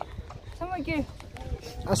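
Speech only: a person's voice in short phrases, with a low rumble underneath.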